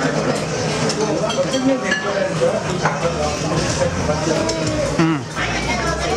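Restaurant hubbub: several diners talking at once in the background, with a few light clinks of dishes and cutlery.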